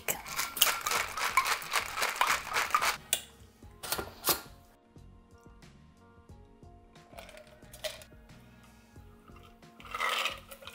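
Ice rattling hard in a stainless steel cocktail shaker as a martini is shaken, stopping about three seconds in. A few sharp metal knocks follow, then soft background music.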